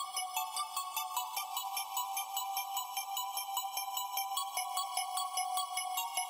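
Hardstyle music in a quiet breakdown: held synth tones under a light, regular bell-like synth pattern, with no bass or kick drum.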